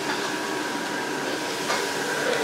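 Steady mechanical background hum and hiss with a faint, thin steady whine, and one small knock near the end.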